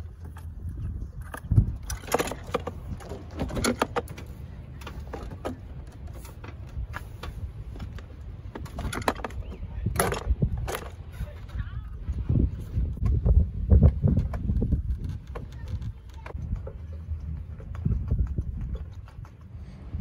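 Plastic interior door panel of a 1995–98 Chevy pickup being hung back on the door and pressed into place: a series of irregular clicks, knocks and rubbing of plastic against the door, with the loudest knocks about halfway through and again a few seconds later.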